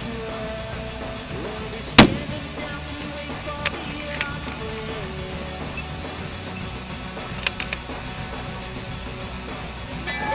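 A single shot from a large-calibre extreme-long-range rifle about two seconds in, one sharp crack far louder than anything else, over steady background music. A few faint clicks follow.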